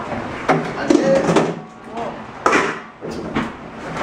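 People laughing and talking, with a couple of sharp knocks, about half a second in and again past the midpoint.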